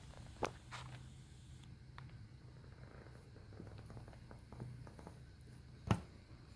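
Quiet room with a faint low hum and a few soft handling clicks, then a sharper knock near the end as a hand takes hold of the ukulele and the phone.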